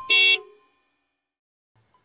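A single short cartoon bus-horn beep near the start, one pitched toot lasting about a quarter of a second.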